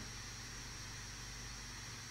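A pause with only a faint, steady hiss and low hum: the background noise of a podcast microphone.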